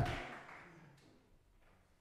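A man's voice trailing off at the start, then near silence: quiet studio room tone with one faint click about a second in.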